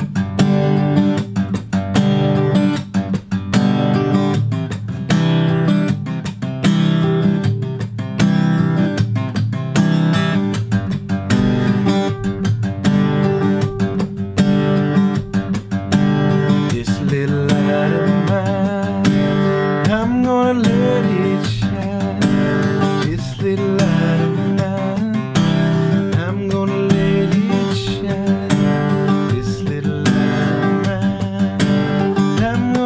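Acoustic guitar strummed by hand without a pick in a steady rhythm, with a percussive smack on the strings between strums: the slap-strum technique. A voice sings along over the second half.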